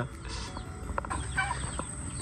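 A chicken clucking: a few short calls about one and a half seconds in.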